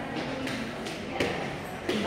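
Indistinct voices of people talking in the background, with a single short knock a little after a second in.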